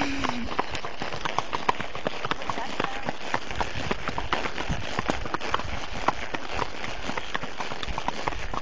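Hoofbeats of ridden horses moving at a brisk pace, with tack rattling: a steady run of irregular clicks and knocks.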